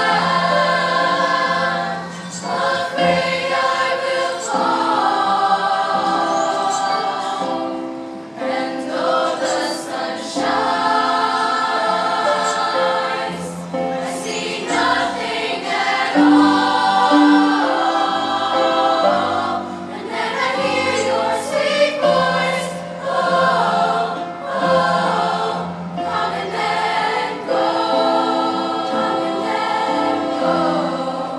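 Choir singing a slow song in harmony: held chords over a low bass line, swelling and easing off phrase by phrase.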